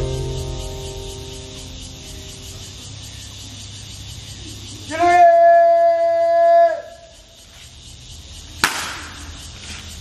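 Background music fading out, then about five seconds in a long drawn-out shouted drill command, held on one pitch for nearly two seconds with a rise at the start and a drop at the end. A sharp crack follows near the end.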